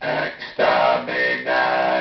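A man's voice run through a homemade two-transformer, four-diode ring modulator driven by an XR2206 sine wave generator, turned into a robotic Dalek-style voice, spoken in three short phrases.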